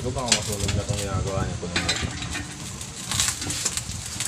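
Pork chops frying in a pan on a gas stove, with a few sharp clinks of metal utensils and cookware.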